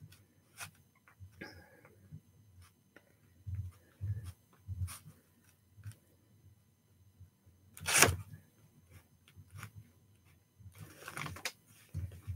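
Quiet handling sounds as a white Uni-ball Signo gel pen marks a paper journal page: faint scattered taps and soft knocks, with one louder sharp tap about eight seconds in.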